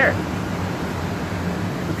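RV rooftop air conditioner running on cool: a steady rush of fan air through the ceiling vents over a low hum, the unit running smoothly on a single small inverter generator with a hard-start capacitor fitted.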